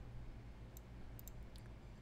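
A few faint computer mouse clicks, sparse and irregular, mostly in the second half.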